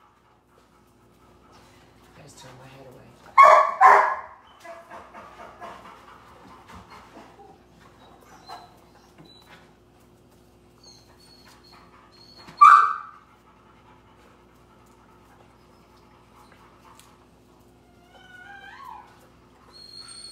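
A puppy giving a couple of short barks, then a single sharp yip, and a few high whines near the end, over a faint steady hum.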